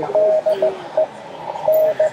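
Morse code (CW) audio tone, a single steady pitch keyed on and off in short dits and longer dahs, feeding a haptic CW assist device that turns the tone into vibration.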